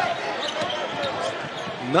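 Basketball being dribbled on a hardwood court, a series of short bounces, over the steady murmur of an arena crowd.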